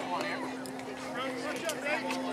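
Indistinct chatter of spectators' and players' voices overlapping, with no clear words, over a steady low hum.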